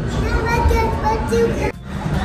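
Children's voices and chatter over a steady low rumble of a busy indoor hall. The sound cuts out briefly near the end.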